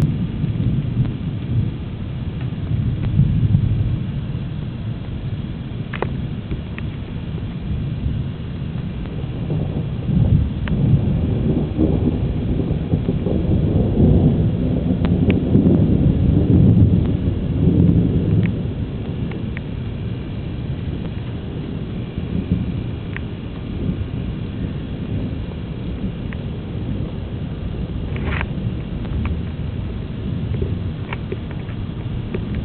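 Thunder rumbling low and continuous from a lightning storm, building into a long rolling peak about ten seconds in and easing off again a few seconds later.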